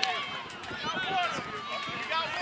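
Several people talking and calling out at once across an open field, with no single clear voice.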